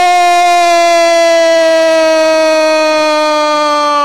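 A football commentator's long held goal shout: one loud sustained note on a single breath, sinking slightly in pitch before it cuts off.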